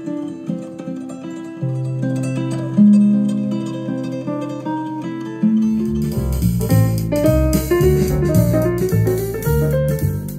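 Music played through a bookshelf speaker fitted with a Recoil 6.5-inch component woofer and tweeter, driven full-range by a $17 budget subwoofer amplifier. A plucked-guitar piece plays first; about five and a half seconds in it gives way to a track with deep bass and a steady beat.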